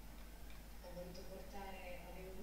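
A faint voice speaking in the background from about a second in, with a few light ticks.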